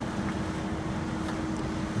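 Steady machinery noise with a constant low hum running under it, starting abruptly.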